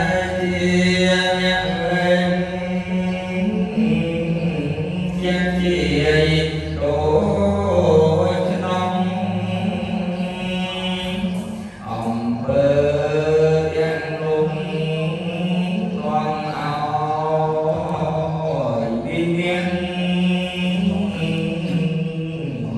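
Khmer Buddhist chanting: a single melodic recitation voice drawn out in long held notes, amplified through a handheld microphone, with a short break for breath about halfway through.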